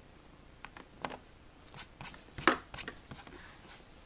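Hobby knife and fingertips working carbon-fibre vinyl wrap around a laptop-lid logo: a scatter of small scratches and clicks, the loudest about two and a half seconds in, with a soft rubbing hiss near the end.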